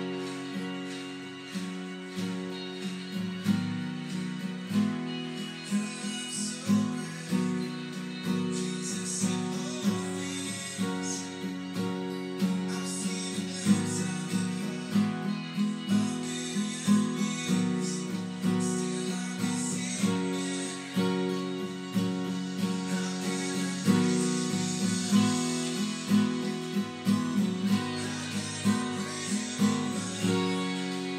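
Steel-string acoustic guitar, capoed at the fourth fret, strummed in a steady rhythm through a worship-song chord progression (C, G/B, D shapes, sounding in E).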